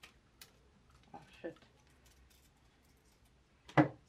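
Scissors cutting a syngonium stem during pruning: two short, crisp snips, one right at the start and one about half a second later.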